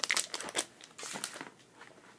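Clear plastic packaging bag crinkling as it is handled and moved, in a cluster of short rustles during the first second and a quieter rustle about a second in.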